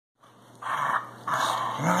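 Two dogs play-fighting, growling in two rough bursts, the second longer than the first.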